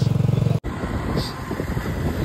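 A vehicle engine idling close by with a steady low throb. About half a second in, the sound cuts to engine and road rumble heard from inside a car moving slowly through traffic.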